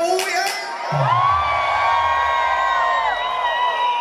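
Concert crowd cheering and whooping as the song ends. The last beats of the music stop just after the start. From about a second in, many long held shouts carry on over a low rumble that fades away.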